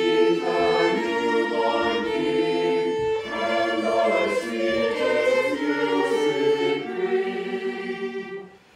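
Background music: a choir singing slow, long-held chords.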